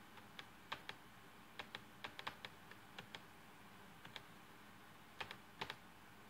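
Faint, irregular clicking of buttons or keys being pressed, about twenty short clicks in quick clusters with pauses between, as trail camera pictures are paged through.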